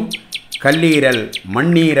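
Small birds chirping in short, high notes, mostly in the first half second, under a man's voice.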